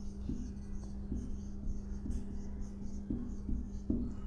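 Marker pen writing on a whiteboard: a run of short, faint strokes as words are written. A steady low hum runs underneath.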